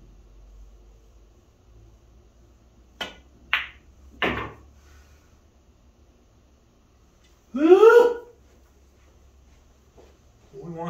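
A pool cue strikes the cue ball about three seconds in, followed by two more sharp clicks of balls on the table within the next second and a half. About eight seconds in, a man gives a short rising vocal exclamation, the loudest sound here.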